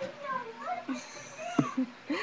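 Several short meow-like calls, one after another, each rising and falling in pitch; the loudest, about halfway through, slides steeply down.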